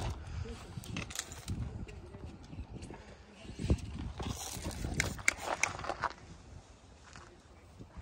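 A hand spray bottle squirting alcohol onto a horse's clipped shoulder patch, a short hiss about halfway through. Scattered light clicks and shuffles come from the horse shifting on gravel and from handling.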